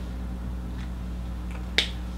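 Steady low hum, with a single short sharp click near the end.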